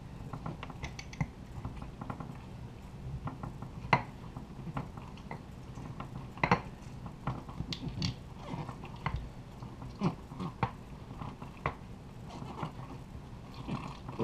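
A wooden tamper packing chopped peppers down into a glass mason jar. It makes irregular soft crackles and thuds, with a few sharper knocks now and then.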